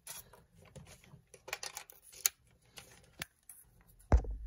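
Quiet handling noise from a metal lens-mount adapter ring and a camera body: scattered light clicks and rustles, with a few sharper clicks, the loudest about two seconds in.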